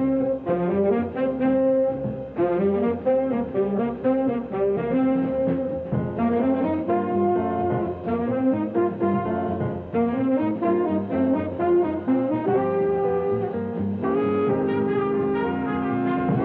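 Big band playing an up-tempo jazz number, the brass section riffing in short rising figures that break off every couple of seconds. It comes from a 1950s radio aircheck, dull and cut off above about 4 kHz.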